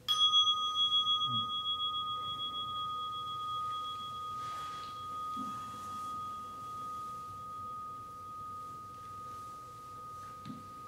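A meditation bell struck once, ringing with one clear tone that fades slowly and wavers in loudness, its higher overtones dying away within the first few seconds. It marks the end of the meditation sitting.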